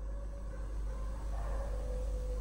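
Steady low hum with a few faint, steady higher tones over it: background room tone with no speech.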